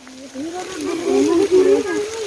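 A person's voice in one long, drawn-out vocal sound with no words, its pitch wavering up and down for about two seconds.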